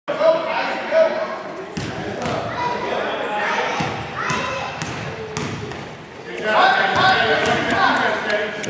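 A basketball bouncing on a gym floor, a few sharp bounces, amid indistinct voices of players and spectators echoing in a large gym; the voices get louder near the end.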